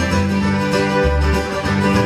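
Live bluegrass band playing, with fiddle, acoustic guitar, mandolin and upright bass.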